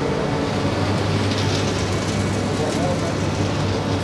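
Passenger train at a station platform: a steady rumble with a low hum, mixed with the murmur of a crowd's voices.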